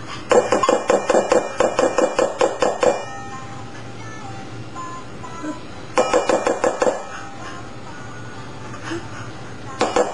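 A metal spoon tapping rapidly against a stainless steel mixing bowl, about five ringing taps a second for nearly three seconds, then a shorter run of taps a few seconds later, knocking sticky peanut butter off the spoon.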